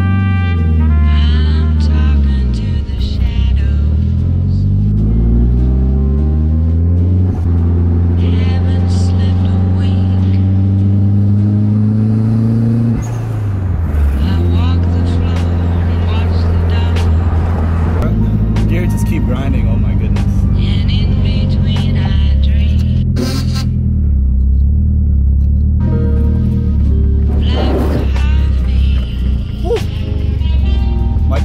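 Nissan 240SX's turbocharged SR20DET four-cylinder engine heard from inside the cabin, its pitch climbing steadily under acceleration and dropping at each gear change. Background music plays over it.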